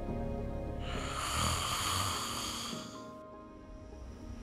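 One long, rasping snore from a sleeping person, starting about a second in and lasting about two seconds, over soft background music.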